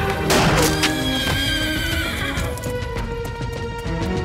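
Action film background score with sharp percussive hits, one shortly after the start, and a high wavering tone that falls in pitch through the middle.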